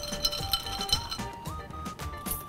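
Ice clinking and rattling in a tall glass as a mixed drink is stirred with a straw, over background music with a simple stepping melody.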